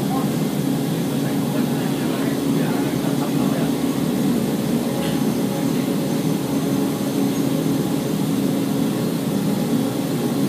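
Running noise of the Montenvers electric rack-railway train heard from inside its carriage while descending: a steady, loud, low drone with no breaks.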